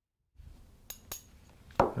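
A few light clicks of a magnet against the clear plastic case holding magnetic viewing film: two close together about a second in and a sharper one near the end, over faint room noise.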